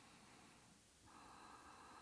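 Near silence: room tone, with a faint, steady breath through the nose starting about a second in.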